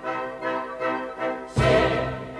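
Opera orchestra playing a passage of sustained chords that change about twice a second, with a loud accented full chord, heavy in the bass, near the end.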